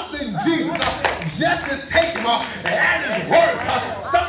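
Church congregation in a praise break: raised voices shouting and exclaiming over hand clapping.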